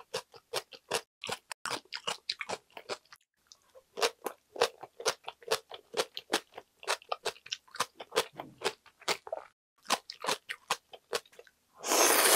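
Close-miked crunching of radish kimchi being chewed, a fast run of crisp crunches several times a second with a brief pause about three seconds in. Right at the end a loud slurp of noodles begins.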